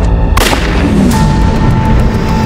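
A sudden loud boom about a third of a second in, with a long reverberating tail, over a low music bed; a steady high tone rings in the second half.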